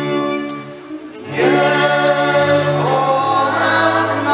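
Góral highland string band of fiddles and string bass playing a short instrumental lead-in that dies away about a second in. Then voices come in singing together with the fiddles.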